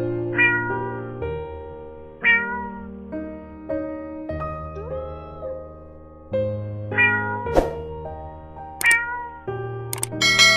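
A domestic cat meowing several times in short calls, over background music of held piano-like chords. A couple of sharp clicks come near the end.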